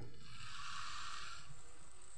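Moong dal batter hissing softly as it is poured from a ladle onto a hot, oiled tawa, the sizzle fading out about a second and a half in, over a low steady background rumble.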